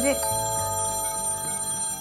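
A telephone ringing with a steady electronic ring that stops abruptly at the end.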